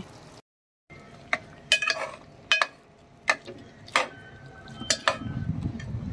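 Steel spoon knocking against an aluminium cooking pot, about eight separate clinks spread over several seconds, some ringing briefly. A low rumble of the phone being handled comes in near the end.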